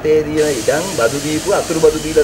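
A man speaking to reporters' microphones. A steady, high hiss of air or spray starts about half a second in and lasts about two seconds, over his voice.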